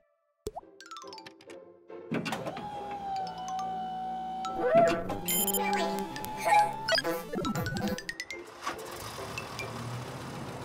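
Cartoon background music starting about two seconds in, with comic sound effects layered over it: several short sliding-pitch effects and a few pops. A click sounds just before the music begins.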